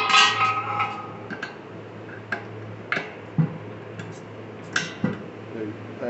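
Metal clinks and knocks from a steel beer keg and its coupler and gas-line fittings being handled: a ringing clang at the start, then a handful of sharp clicks over the next few seconds. A steady low hum runs underneath.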